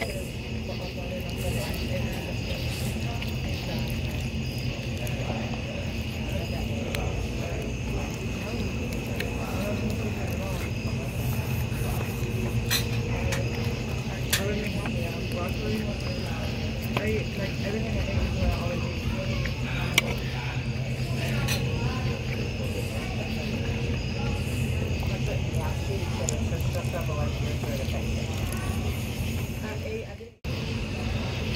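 Restaurant ambience: indistinct chatter of other diners over faint music and a steady hum. A few sharp clinks of cutlery on a metal platter come now and then.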